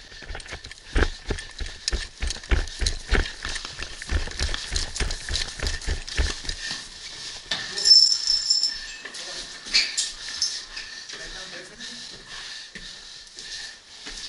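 Running footsteps in boots, about three strides a second, with gear jostling, slowing to a stop after about six seconds. A brief high-pitched beep follows near the middle, then scattered light clicks.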